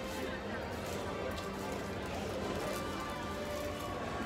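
Quiet background music with faint voices of other people, steady and without any sharp sounds.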